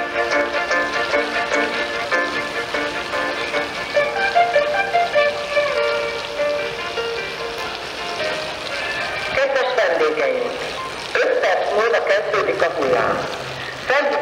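A short tune played over the pool's loudspeakers, the signal that the wave pool is about to start. About two-thirds of the way through, the music gives way to a spoken announcement.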